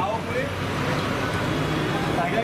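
Indistinct voices talking over a steady low hum of engines and road traffic.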